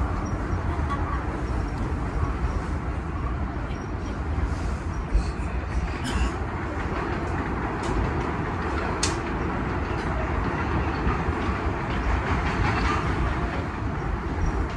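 Interior of an R46 subway car running out of an elevated station: steady rumble of wheels and running gear on the track, with a few sharp clicks over the rail. Another subway train passes close by on the adjacent track around the middle.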